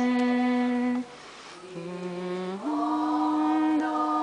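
Choir singing a slow hymn in long held notes. The singing eases off about a second in, holds a lower note briefly around the middle, then rises again to a long held note.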